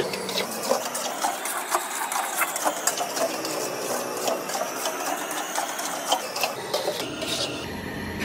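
Long metal spatula scraping and stirring semolina in a large iron wok, a rapid, uneven run of scrapes and clicks against the pan.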